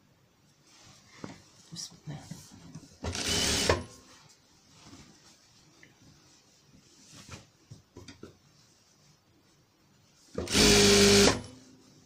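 Electric sewing machine stitching in two short bursts, one about three seconds in and a slightly longer one near the end, with fabric being handled and shifted under the presser foot between them.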